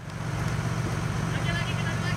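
A steady low engine hum under a noisy background, with faint voices coming in from about halfway through.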